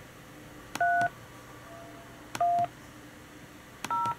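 Three DTMF touch-tones from a Skype dial pad keying the digits 3, 1, 0, each a short two-note beep about a second and a half apart. A click comes just before each tone.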